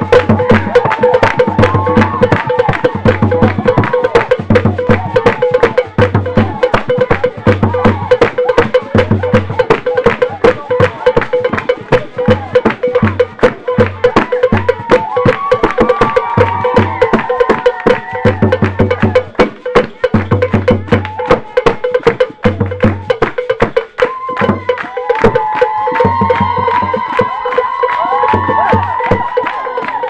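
Traditional percussion music with drums and a wood-block-like beat, struck fast and steadily, with voices singing over it in places.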